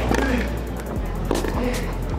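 Tennis ball struck with racquets in a baseline rally on grass: a few sharp hits, one clear about a second and a half in, over steady background music.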